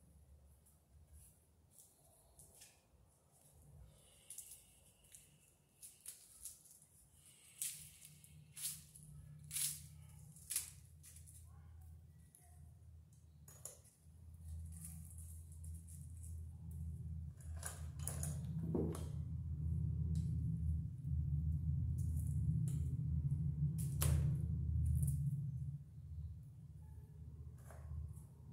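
Rustling and sharp clicks of plastic cable sheathing and copper wires being handled as the jacket of 14/2 electrical cable is stripped and the conductors pulled apart. About halfway through, a low rumble comes in and grows louder.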